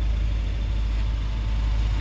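Ford Capri 1600's four-cylinder engine idling steadily, a low even rumble.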